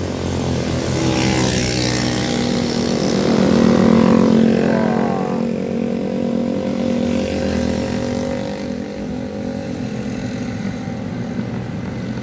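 Several motorcycles ride past one after another, their small engines growing louder to a peak about four seconds in. Their pitch drops as each goes by, and the sound then fades to a steadier, lower engine noise.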